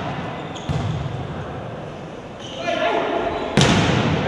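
A volleyball being struck during a rally in an echoing indoor gym: one hit about a second in, then a louder smack near the end. Players' voices shout during the last second and a half.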